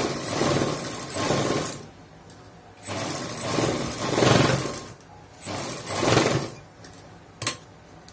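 Domestic sewing machine stitching a fabric strip in three short runs, starting and stopping between them, followed by a single sharp click near the end.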